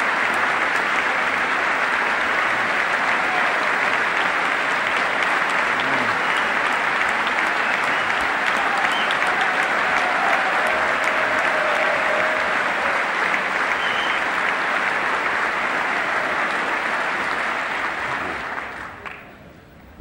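A large audience applauding steadily and loudly, the sustained clapping dying away over the last two seconds.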